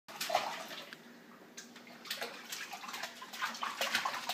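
Baby splashing with her hands in water in a small plastic infant bathtub: irregular splashes, more frequent in the second half.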